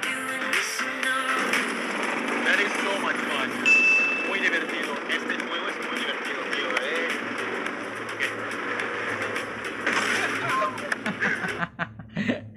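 Voices talking and calling out over background music, with a go-kart's small petrol engine humming steadily underneath in the second half.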